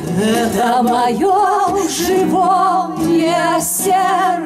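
Women singing a song in Russian with a wavering vibrato, accompanied by an acoustic bass guitar and a guitar.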